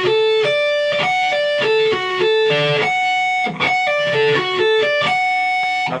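Electric guitar playing a sweep-picked D major arpeggio: a pull-off from the 14th to the 10th fret on the high E string, then single notes down across the B and G strings, the same short figure of ringing notes repeated several times.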